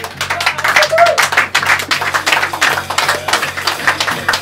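Jazz drum kit played with sticks: a fast, loose, irregular stream of snare, tom and cymbal hits in free improvisation, with a few faint pitched notes underneath.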